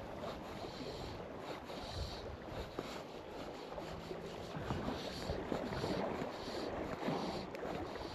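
Wind blowing across the microphone, with small wind-driven waves lapping on a loch shore: a steady, fairly quiet rush of outdoor noise.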